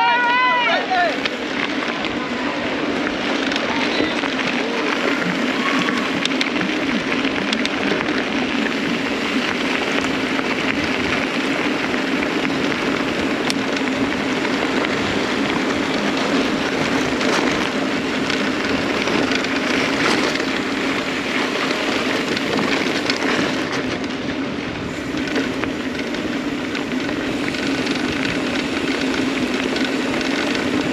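Knobby mountain-bike tyres rolling on a gravel road, a steady rough noise with no let-up. A brief shouted voice is heard in the first second.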